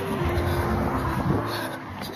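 Background music over the noisy rumble of road traffic.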